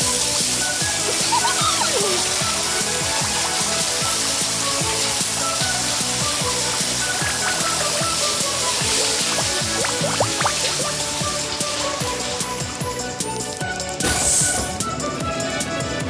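Background music playing over a hissing water-spray sound effect from car-wash shower nozzles; the spray stops about three quarters of the way through.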